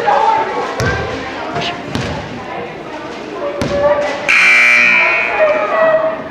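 Gym crowd chatter with a few basketball bounces on the hardwood floor, then a loud scoreboard buzzer sounds for about a second and a half, starting about four seconds in.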